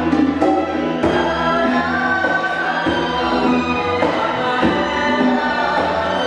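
Live chamber ensemble music: bowed strings (violin, cello, double bass) playing with a male voice singing over them, and occasional percussion strikes.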